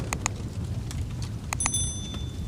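Subscribe-button animation sound effects: a low rumble dying away, a couple of mouse clicks just after the start, then another pair of clicks and a high bell ding about one and a half seconds in.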